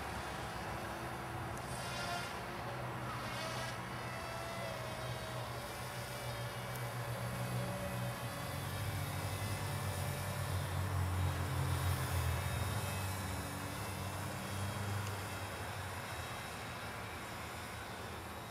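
PremierRC V Wing Box radio-controlled kite-plane flying overhead, its vectored-thrust propeller motors buzzing with a pitch that wavers as the throttle and heading change. The sound grows louder through the middle of the flight pass and eases off near the end.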